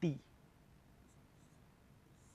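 Marker pen drawing on a board: a few faint, short scratchy strokes.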